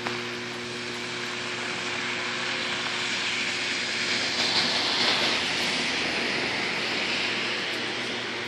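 A car driving past on a wet, snow-covered road: its tyre hiss builds, peaks about four to five seconds in, then fades. A steady low hum runs underneath.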